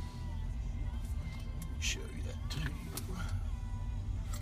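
Car radio playing faintly inside a car's cabin over a low steady rumble, with a brief hiss about two seconds in.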